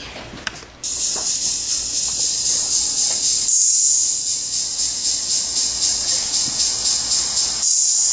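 Backing music for a rap starts abruptly about a second in: a bright, hissing high-pitched sound pulsing about three times a second.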